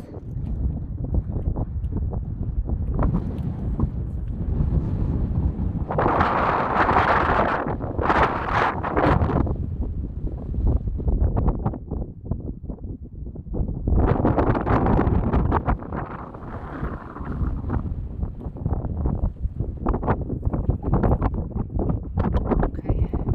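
Strong wind buffeting a phone's microphone: a loud, constant rumble that swells in gusts, hardest about a quarter of the way in and again past the middle.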